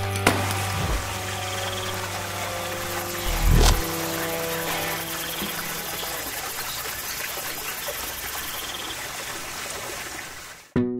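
Title-sequence sound design: a sharp crash of breaking glass just after the start and a deep boom about three and a half seconds in, over held music notes and the steady rush of a waterfall.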